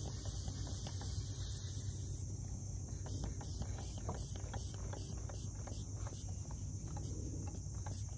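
Insects chirring: a steady high trill with a shrill hiss above it that, about two seconds in, breaks into a rhythm of about three pulses a second.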